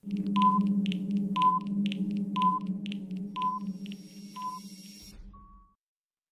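Quiz countdown timer sound effect: a steady low electronic hum with a short high beep about once a second and quicker ticks between, fading away over about five seconds and ending on one short beep.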